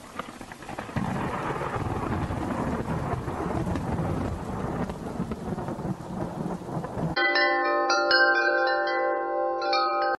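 Thunderstorm sound effect: rain with rolling thunder, swelling about a second in. About seven seconds in it cuts off abruptly and gives way to wind chimes ringing, which stop suddenly at the end.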